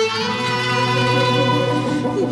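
Turkish art music ensemble playing an instrumental passage in makam Rast: a violin melody over plucked strings.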